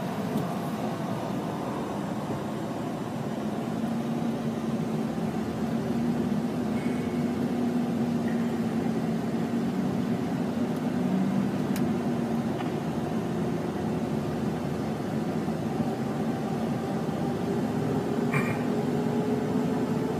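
Running noise inside a moving vehicle's cabin: a steady engine and tyre hum, with one tone slowly rising in pitch over the second half as the vehicle picks up speed alongside the taxiing turboprop.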